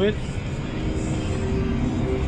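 Steady low drone inside the cab of a John Deere 7R 290 tractor driving alongside a working forage harvester, the machine noise muffled by the closed cab.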